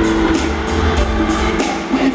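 Live R&B band playing, with bass guitar, electric guitar and sustained chords over percussion ticking steadily in time. The low bass drops out near the end.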